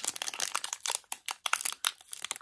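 Foil wrapper of a Pokémon trading card booster pack crinkling as it is torn open by hand: a dense run of irregular crackles.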